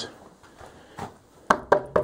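Three quick knocks on the thick rough-cut wooden boards of a horse stall, about a second and a half in, coming fast one after another.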